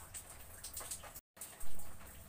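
Faint room noise in a pause between speech, broken a little over a second in by a moment of total silence where two recordings are spliced together, followed by a short soft sound.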